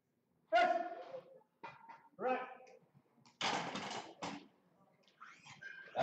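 A few short, loud shouts from people in the hall during a bench-press attempt, separated by brief silences; the loudest, harsher one comes a little past the middle.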